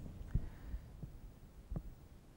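Quiet room hum with two soft, low knocks, one about a third of a second in and one near the end.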